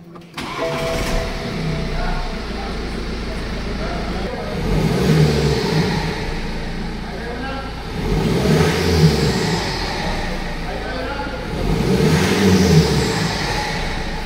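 BMW diesel engine cranked and firing up just after newly fitted injectors have had their correction codes programmed, then running at about idle. Its note swells and falls back three times.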